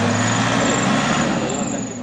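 A motor vehicle's engine running steadily with road noise, fading out near the end.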